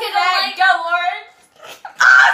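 A girl's high-pitched, drawn-out squeal with a wavering pitch, lasting about a second, then dying away.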